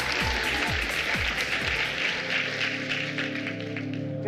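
Applause and hand clapping over background music. The music's repeating falling bass stops about two seconds in, leaving a steady held chord under the clapping.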